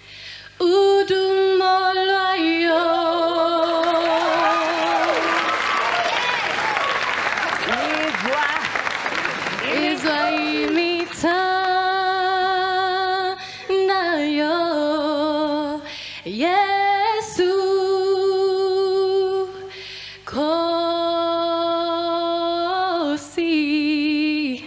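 A young woman sings solo a cappella into a microphone, holding long notes with vibrato. For several seconds in the first half the studio audience cheers and applauds over her singing.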